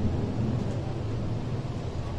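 Steady low rumble of room background noise, with no distinct events.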